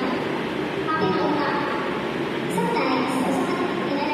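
A woman talking into a microphone, her voice coming over a loudspeaker in phrases with short pauses, over a steady rushing background noise.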